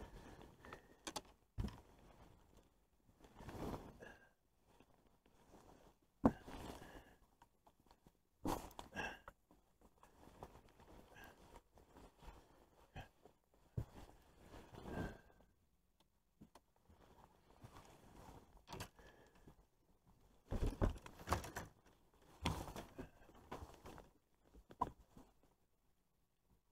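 Intermittent rustling of a waterproof rain jacket and light handling knocks close by, in scattered short bursts with quiet gaps between and a busier spell near the end.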